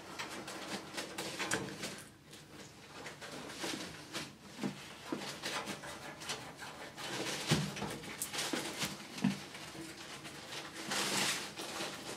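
Small irregular clicks, scrapes and rattles as the side-panel screws are unscrewed by hand from the back of a Cooler Master HAF 922 steel PC tower case.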